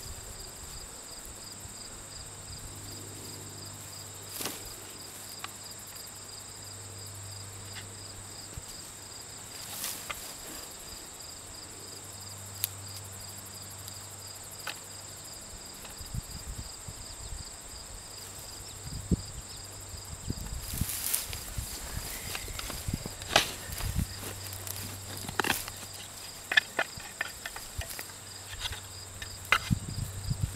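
Insects chirring steadily in a high, pulsing drone, with scattered clicks and rustles of hands digging potatoes out of soil and straw mulch. The digging noises grow busier and louder over the second half.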